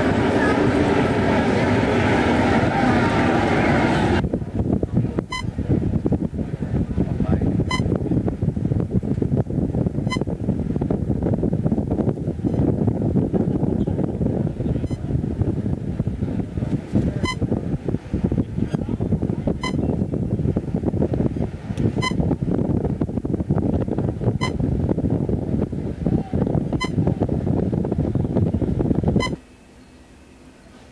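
Wind buffeting a camcorder microphone on a ship's open deck, a dense, uneven low rumble. For the first four seconds or so a busier wash of crowd voices is mixed in. A light tick repeats about every two and a half seconds, and the sound stops abruptly near the end.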